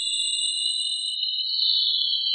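Several pure electronic tones, synthesized from brush strokes painted in a spectrogram editor, sound together and edge slowly upward in pitch. A faint higher whistle drops out just past a second in, and near the end two of the tones meet and grow a little louder.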